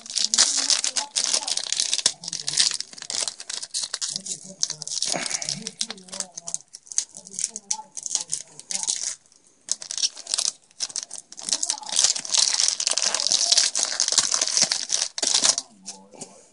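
A Yu-Gi-Oh! Duelist Pack booster wrapper crinkling and tearing as it is ripped open by hand, in two long stretches of rustling with a short lull about nine seconds in.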